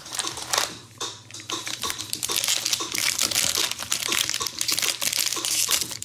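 Foil wrapper of a Donruss soccer trading-card pack crinkling as it is handled and worked open by hand: scattered crackles at first, then continuous crinkling from about two seconds in.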